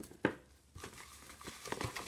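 Rustling and crinkling of iridescent shredded filler in a cardboard gift box as a hand rummages through it, with one sharp tap near the start and busier rustling toward the end.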